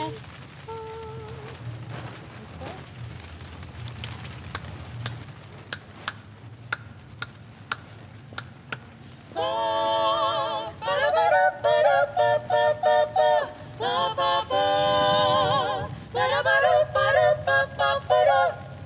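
Four women's voices singing a cappella in close harmony, coming in about nine seconds in and chopped into short rhythmic syllables. Before the singing there is a low background with a run of sharp clicks, about two a second.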